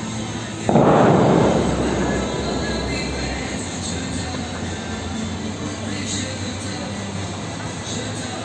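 Music from the Bellagio fountain show's loudspeakers, with a sudden loud rush of noise a little under a second in that fades over about a second, as the fountain's water jets fire.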